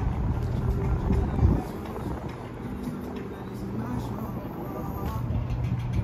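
Outdoor ambience: a low rumble, strongest in the first second and a half, with faint, indistinct voices in the background.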